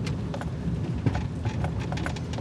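Car cabin road noise: a steady low rumble of tyres on a rough, patched paved lane, with scattered light knocks and ticks.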